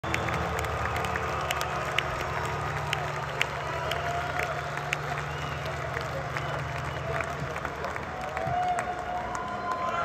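Arena crowd applauding and cheering at the end of a song, with sharp nearby claps and a few whistles standing out. A low steady tone from the stage sounds under the applause and fades out about seven seconds in.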